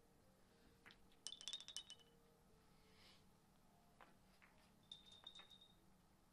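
Faint five-pins billiards shot: a cue tap, then a quick run of sharp clicks and ringing clinks as the balls and skittles strike each other. About five seconds in there is another short run of clinks from the balls and pins on the table.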